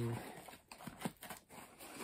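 Faint rustling and a few soft clicks as a shipping package of discs is handled and opened.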